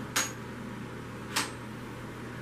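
Two brief sharp clicks about a second and a quarter apart, from small hard objects being handled, over a steady low hum.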